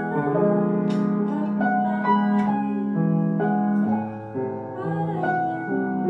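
A small band playing live: grand piano most prominent, with electric bass, acoustic guitar and drums. The piano holds sustained notes and chords, and a few sharp drum or cymbal strikes come through.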